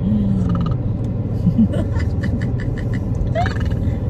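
Steady low road and engine rumble inside a moving car's cabin, with short bursts of laughter and voice from the passengers over it.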